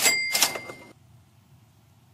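A metallic bell-like ding: two quick hits about half a second apart, ringing for under a second before it cuts off, followed by faint room tone.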